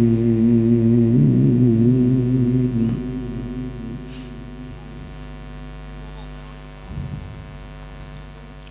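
A man's voice chanting Quran recitation through a microphone and loudspeaker in one long, wavering held note that fades out about three seconds in. After it, a steady electrical mains hum from the sound system remains, with a brief bump near the end.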